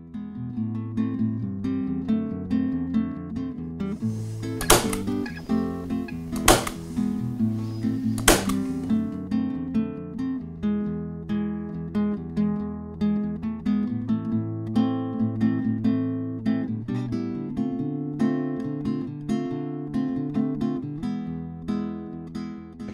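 Background acoustic guitar music. About five, six and a half, and eight seconds in come three sharp clicks, which are typical of a staple gun driving staples into stretched canvas.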